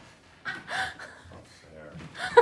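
A person's surprised gasp and short exclamation about half a second in, followed by softer voice sounds.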